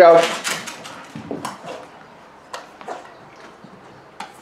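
A brief spoken command at the start, then a few sharp, separate clicks and knocks as a dog searches among small metal scent cans on a rug during scent-detection training.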